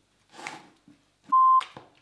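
A single short, loud electronic beep at a steady pitch, lasting about a third of a second, about 1.3 s in. It has the sound of an edited-in censor bleep covering a word. A brief breathy noise comes just before it.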